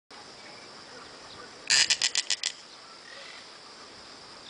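Snail kite calling: a dry rattle of about six rapid notes, under a second long, near the middle. A steady high insect hum runs underneath.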